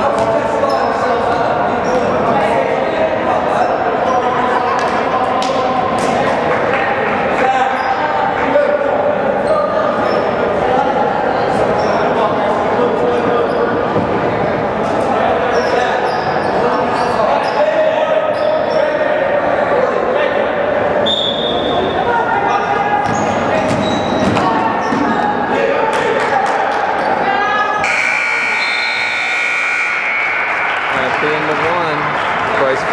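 Basketball bouncing on a hardwood gym floor and sneakers squeaking, amid spectators' indistinct chatter echoing in the gym. Near the end the scoreboard buzzer sounds a steady tone for about two seconds, ending the period.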